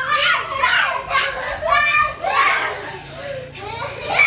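Young children shouting and yelling in high voices as they play rough-and-tumble, with a sharp high-pitched cry about two seconds in.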